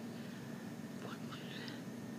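Faint breathy, whispery mouth sounds from a person, starting about a second in, over a steady low background hum.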